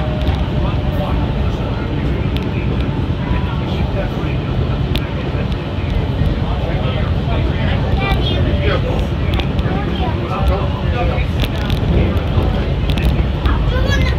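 Walt Disney World Mark VI monorail (Monorail Black) running at speed, heard inside the passenger cabin: a steady low rumble, with passengers' voices chattering over it.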